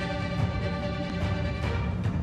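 Violin played over a recorded backing track with a beat, the music having begun just before.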